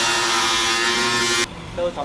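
Angle grinder cutting into a car's sheet-metal rear wheel arch, a loud steady high whine that cuts off suddenly about one and a half seconds in.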